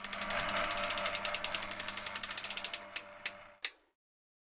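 A rapid, even run of ratchet-like clicks, about fourteen a second, used as a sound effect on an animated title card. It stops after nearly three seconds, then comes three separate clicks and silence.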